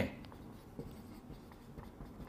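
Marker pen writing on a whiteboard: faint rubbing strokes with a few light ticks.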